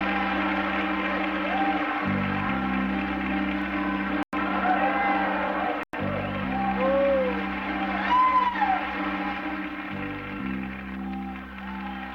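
A live band's slow introduction: held chords that change every couple of seconds, with a few rising-and-falling calls over them in the middle. The sound cuts out for an instant twice, a little over four and about six seconds in.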